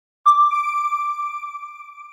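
A single electronic chime, the news outlet's end-card sound logo: one clear ringing tone that starts sharply about a quarter second in and fades away slowly.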